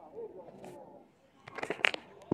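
Faint voices at first, then from about one and a half seconds in a quick run of sharp clicks and knocks as a hand grabs the phone and rubs and bumps against its microphone.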